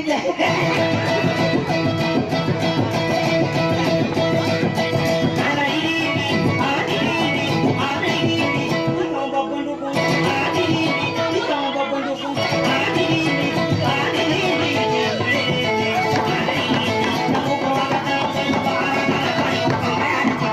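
Plucked string music: a guitar and a kutiyapi boat lute playing an instrumental dayunday passage, with a steady run of plucked notes over sustained ringing tones.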